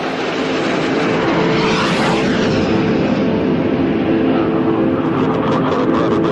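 Jet fighter flying past: a steady rushing jet-engine noise that grows brightest about two seconds in and then slowly turns duller.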